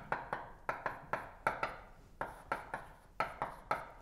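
Chalk writing on a chalkboard: a quick, uneven series of about a dozen short taps and strokes as a formula is chalked up.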